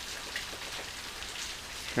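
Heavy rain falling steadily, with water pouring from roof spouts and splashing onto the pavement.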